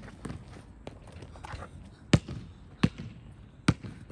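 Basketball bouncing on a red rubberized outdoor court: three sharp bounces about three quarters of a second apart in the second half, after fainter footsteps and scuffs.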